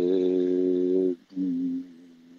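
A man's drawn-out hesitation sound, a hummed 'yyy' held at one steady pitch for about a second, then a shorter, lower one.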